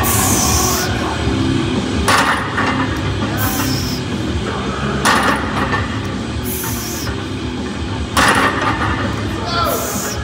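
Loaded barbell with iron plates clanking down on the gym floor between deadlift reps, about every three seconds, three times, the last the loudest, over background rock music.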